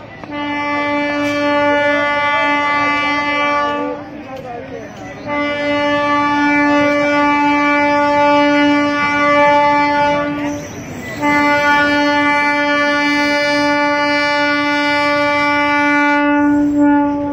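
Diesel locomotive's air horn sounding three long, steady blasts at one pitch with short breaks between them as the engine approaches and passes beneath.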